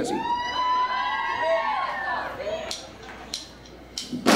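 Club audience cheering, with long rising-and-falling whoops and shouts that overlap, dying down in the last second or so.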